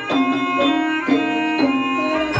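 Javanese gamelan music of the Banyumasan ebeg style: struck metal keys ringing in a steady pulse of repeated notes.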